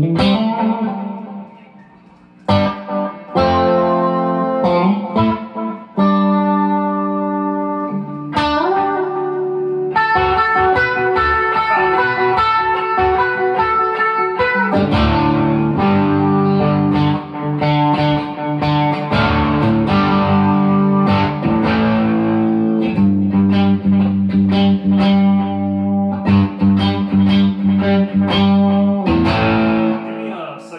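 Sterling by Music Man Cutlass electric guitar played through an amp with chorus and delay, strummed chords and ringing notes. There are a few short phrases with pauses at first, then steady rhythmic strumming from about ten seconds in.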